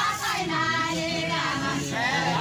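Several voices singing together, a higher wavering line over held lower notes.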